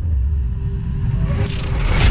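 Deep, steady low rumble of a cinematic logo-reveal sound effect, with a faint held tone above it and a rising hiss swelling near the end.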